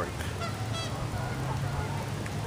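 Geese honking faintly in the distance over a steady low background rumble.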